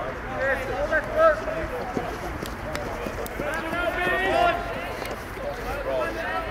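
Men's field hockey players shouting calls to each other across the pitch, loudest about a second in and again near the middle, with a few short sharp knocks among the shouts.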